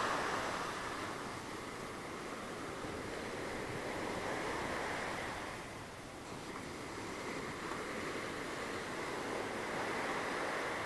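Sea surf breaking and washing up a sandy beach: a steady rushing with slow swells in loudness and a brief dip about six seconds in.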